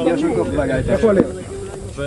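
Men's voices talking in Hebrew, more than one at once, over a steady hiss; the talk eases off a little in the second half.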